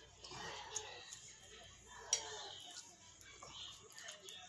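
Quiet eating at a table: a faint voice humming and a few sharp clicks, the sharpest about two seconds in.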